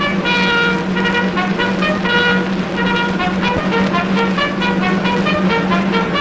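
1930s orchestral film score with brass playing a quick run of notes over a steady held low note.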